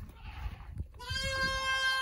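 A Mini Nubian goat kid bleating: one long call at a steady pitch, starting about a second in.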